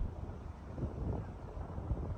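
Wind buffeting the microphone outdoors: an uneven, gusty low rumble.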